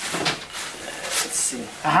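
Plastic packaging wrap rustling and crinkling as it is handled and pulled off the panels of a flat-pack wooden enclosure.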